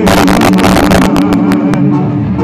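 Live Mexican banda music over a concert sound system: tuba and brass hold long low notes under drum and cymbal hits that are dense for the first second, then thin out to single hits.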